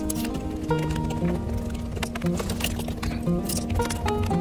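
Background music with sustained notes over a light tapping beat.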